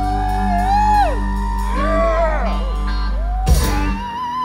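A live country-rock band holding the last chord of a song, with whoops sliding over it. About three and a half seconds in, the band hits a final accent and the held low notes cut off.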